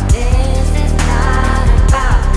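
Electropop music: a heavy sustained synth bass with drum hits and a rising synth line near the start.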